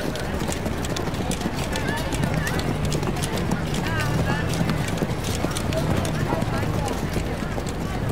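Horse hooves clip-clopping on a hard street, many irregular strikes, over a murmur of indistinct crowd voices.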